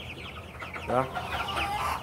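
Flock of young white broiler chicks peeping continuously, many short, high cheeps, each falling in pitch.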